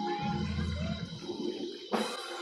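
Sustained low keyboard chords of church background music playing under a pause in the preaching, with a brief voice calling out from the congregation.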